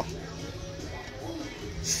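Quiet background of faint voices and music over a steady low hum.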